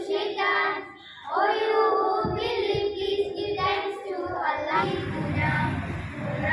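Young voices singing a slow melody with long held notes, breaking off briefly about a second in before going on. A low rumble joins from about two seconds in.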